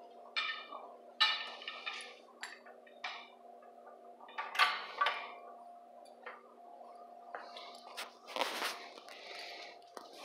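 Metal nunchuck chain clinking and rattling in several short bursts as the nunchucks are handled, over a steady low hum.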